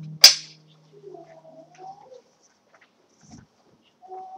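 A single sharp, very loud knock about a quarter second in, over the dying end of a held low note from the music before it. Only faint scattered sounds follow.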